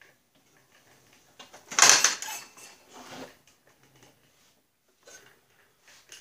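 Metal parts being handled on a Snapper rear-engine rider's drive shaft: a brief clatter about two seconds in, with lighter knocks and rustles around it.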